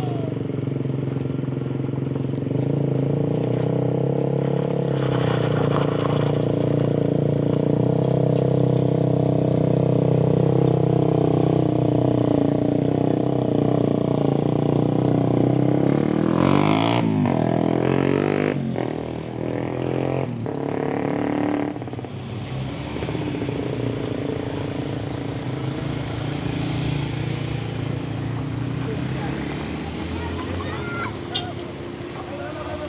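Car and motorcycle engines climbing a steep dirt road. A steady engine drone builds to its loudest around ten seconds in, then motorcycles pass close about sixteen seconds in with their engine pitch sweeping up and down, and quieter engines follow.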